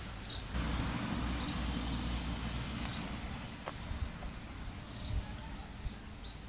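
A small bird giving short, high chirps every second or two, over a steady low rumble that is louder for the first few seconds.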